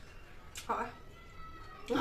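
A spoon clicks once against a metal tin, followed straight away by a short voiced sound.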